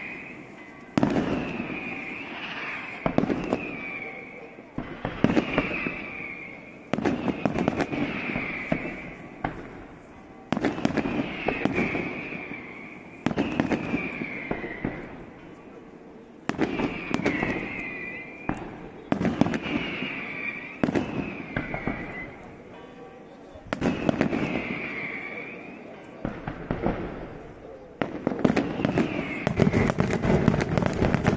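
Daytime fireworks display: about a dozen loud bangs, one every two to three seconds. Each is followed by a decaying crackle and a short, slightly falling whistle.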